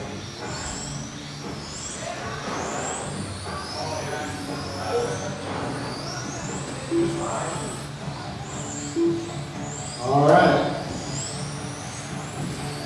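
Several 1/10-scale electric RC touring cars with 21.5-turn brushless motors whining high, the pitch rising and falling again and again as the cars speed up and brake through the corners. A few short beeps are heard, and there is a burst of voice about ten seconds in.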